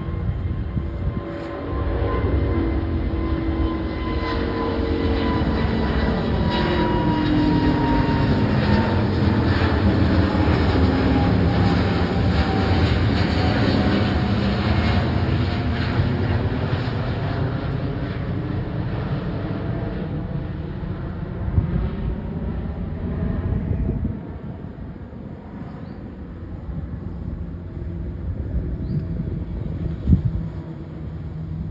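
Twin-engine widebody jet airliner passing low overhead. The engine noise builds to its loudest about ten seconds in, with a whine that falls in pitch as the plane goes past, then fades and drops sharply about 24 seconds in.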